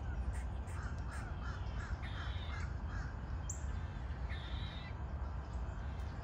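Crows cawing: a quick run of short caws from about one to three seconds in, then a longer call near the end, over a steady low rumble.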